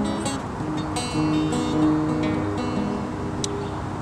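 Acoustic guitar playing an instrumental intro, plucked notes and chords ringing one after another over a steady background hiss.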